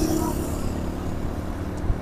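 Road traffic on a city street: a steady low rumble of motorcycle and car engines and tyres, with a short knock near the end.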